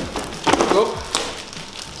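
Rigid white light-box panels, still in their plastic wrap, clattering as they are juggled and nearly dropped, with one sharp knock about a second in and rustling handling noise around it.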